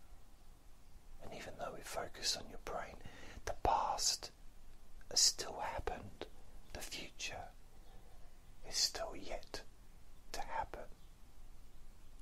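A man whispering hypnosis narration in short phrases with pauses between them, the hissing consonants standing out.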